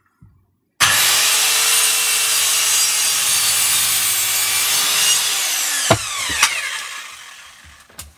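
Corded circular saw starting about a second in and cutting through timber overhead for about five seconds, then switched off, its blade spinning down with a falling whine that fades away.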